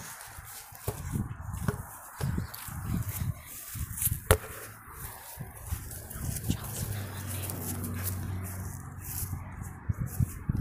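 Repeated low thumps from someone bouncing on a backyard trampoline, with a sharp bang a little past four seconds in. A steady low hum runs through the later part.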